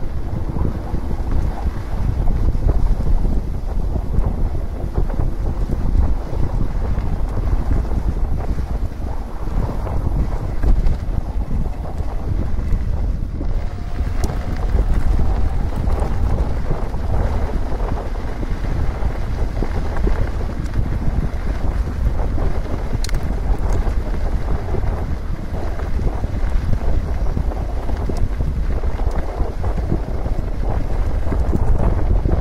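Steady wind buffeting the microphone of a camera on a fast-moving electric mountain bike, with the rumble of its tyres rolling on a gravel road.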